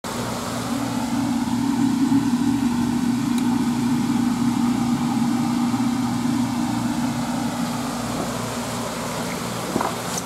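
Steady low hum of a small electric motor, such as an aquarium pump, easing slightly over the last few seconds.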